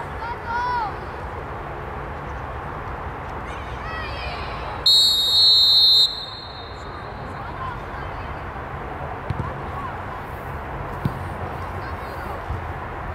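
Referee's whistle blown once, about five seconds in: a single steady, shrill blast lasting about a second. Faint shouts come from players on the pitch.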